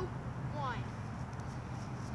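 Mostly speech: a voice says "one" with falling pitch to end a countdown, over a steady low background hum.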